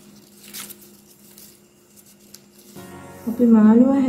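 Faint rustle of paper strips being handled during weaving, over quiet steady background music; a loud voice comes in about three seconds in.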